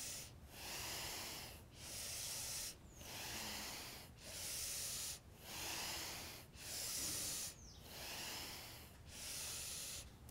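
A woman's audible breathing through the nose and mouth: steady, even inhales and exhales of about a second each, in a regular rhythm paced to lifting and dropping the heels in downward-facing dog.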